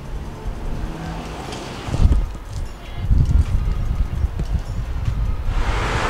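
Road traffic passing on a multi-lane road, with low wind rumble on the microphone and a heavier low thump about two seconds in.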